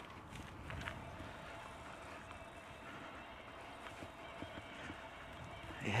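E-bike riding over a bumpy grass track: a steady rumble of tyre and frame noise with many small irregular knocks and rattles, over a faint steady whine.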